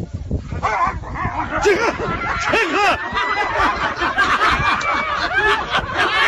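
A jump-scare prank: a startled woman and the man scaring her let out a rapid string of short, overlapping yelps and cries that rise and fall in pitch, mixed with laughter. Scattered thumps and slaps come from the dropped paper towel rolls and the scuffle.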